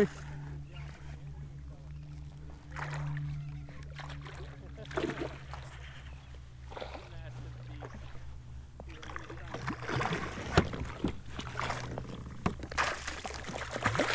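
A small hooked redfish splashing at the water's surface as it is brought alongside a kayak and scooped into a landing net, with several sharp splashes in the last few seconds.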